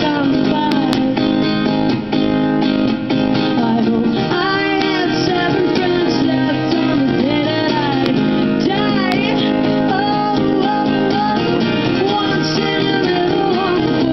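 Two acoustic guitars strummed and picked, with a woman singing over them, as an acoustic live song.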